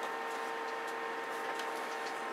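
Steady electronic hum from radio test-bench equipment: a held tone around 450 Hz with its overtones over a hiss, with a few faint ticks.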